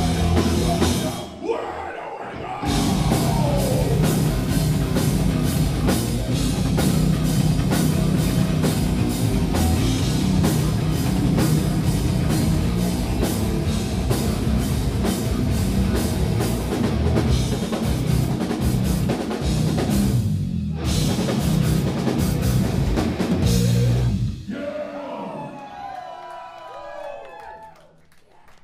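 Live heavy metal band playing at full volume: distorted guitars, vocals and fast, steady drumming, with brief breaks about two seconds in and about twenty seconds in. The song stops about 24 seconds in and the sound dies away.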